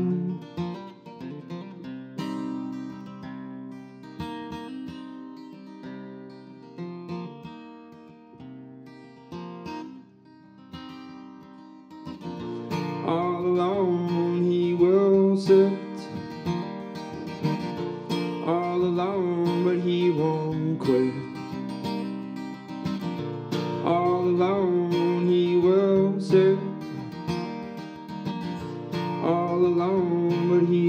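Acoustic guitar played solo in an instrumental break: softer picked notes for the first twelve seconds or so, then louder, fuller strumming through the rest.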